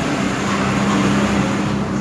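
A motor running with a steady low hum under an even background noise.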